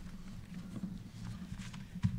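Soft, irregular knocks and handling noise as papers and hands move on a wooden lectern, picked up by the lectern microphones as a low thudding.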